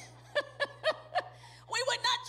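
A woman chuckling into a microphone: four short, falling "ha" sounds about a quarter-second apart, with more laughing near the end.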